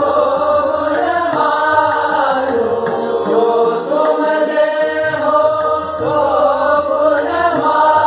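Hindustani classical khyal singing of a composition in Raga Kedar: held notes that glide smoothly from pitch to pitch, with tabla accompaniment underneath.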